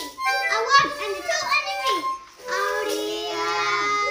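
Small children playing a toy harmonica and a toy accordion together with a child's voice. About halfway through, the instruments settle into one long held chord.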